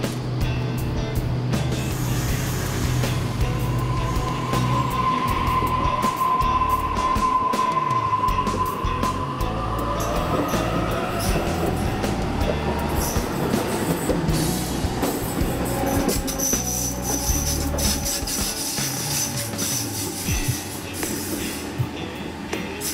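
Double-deck electric suburban train pulling out of the platform, its motors whining and rising in pitch as it gathers speed. Background music plays over the first part.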